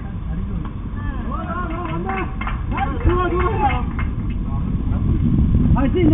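Players' voices calling out across a baseball field in short, drawn-out shouts, over a steady low rumble.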